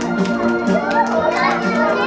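Recorded children's music with a steady beat plays loudly, with young children's voices over it.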